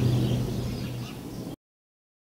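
Outdoor background sound: a steady low hum with a few faint bird chirps, fading and then cutting off to dead silence about a second and a half in.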